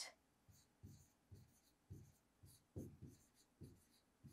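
Faint taps and scrapes of a stylus writing the word "constant" on an interactive whiteboard screen, a short stroke about every half second.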